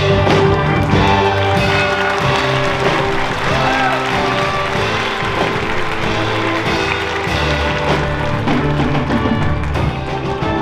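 Music from a theatre pit band playing the show's opening: held chords with scattered percussion hits.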